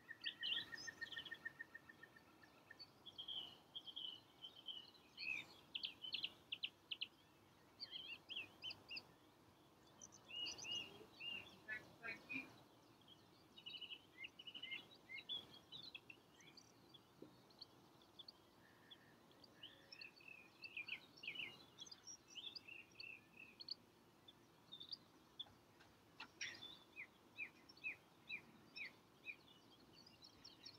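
Faint songbirds singing and calling, with many short chirps and trills scattered throughout, beginning with a rapid, even trill that lasts about two seconds.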